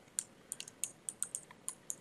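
Computer keyboard being typed on: about ten light, quick keystrokes as a password is entered.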